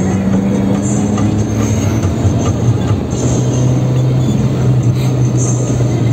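Engine of a Suzuki jeep running under way, heard from inside the cabin over road noise; its steady note steps down in pitch about halfway through.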